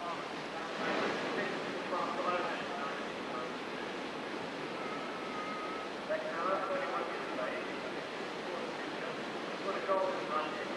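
Rushing whitewater on an artificial slalom course, a steady noisy rush, with faint voices calling now and then.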